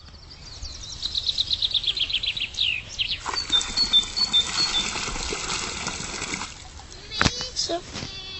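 A songbird sings a quick run of high notes that steps down in pitch. Then, about three seconds in, water is poured out of a plastic bucket and splashes steadily onto wet ground for about three seconds before stopping.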